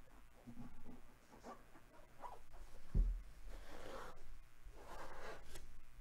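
Folded card-stock packaging of a Topps Luminaries box being opened by gloved hands: rustling and sliding of card against card, with a short thud about halfway through and two longer rustles after it.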